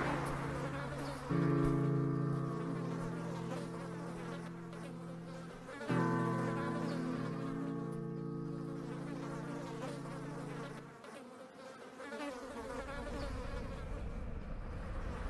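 Flies buzzing over roadkill in two drawn-out swells, each starting suddenly and fading slowly over several seconds. A low rumble rises near the end.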